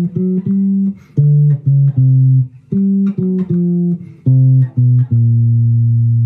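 Electric guitar playing a walking bass line on its own, one low note at a time through a jazz blues turnaround in B-flat (Bb–F–F#–G–D–C#–C, G–F#–F–C–B–Bb). It ends on a long held low B-flat about five seconds in.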